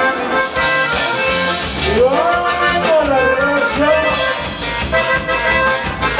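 Live norteño band playing an upbeat number, the accordion leading over guitars, bass and drums.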